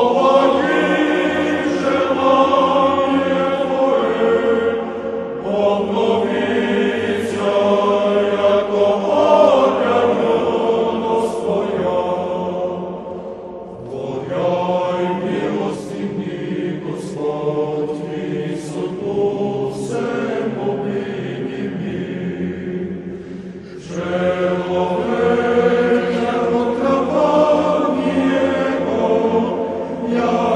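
A choir singing slow Orthodox church chant in long, held phrases, with brief breaths between phrases about 14 and 24 seconds in.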